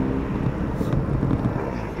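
Low, steady rumble of a vehicle engine running.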